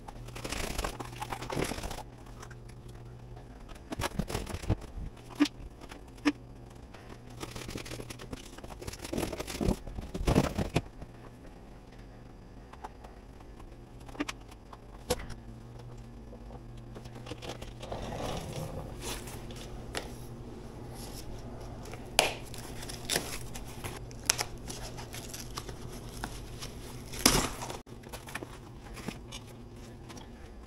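Foam and plastic packaging being pulled and torn off a new e-bike's frame and fork, with zip ties being snipped and pulled free: intermittent rustling and tearing broken by several sharp clicks and snaps, the loudest near the end.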